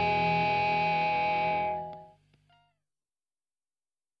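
End of a post-hardcore song: a held, distorted electric guitar chord rings and fades out about two seconds in, a few faint notes trailing after it. Then dead silence, the gap between tracks.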